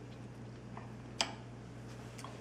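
A metal spoon clicks once, sharply, against a white ceramic ramekin of chili about a second in, with a few faint ticks before it, over a low steady hum.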